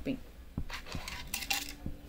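A few light metallic clinks of a gold-plated bead necklace being handled, most of them in the second half.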